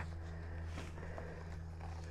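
A low steady hum under faint background noise, with no distinct knocks or rustles standing out.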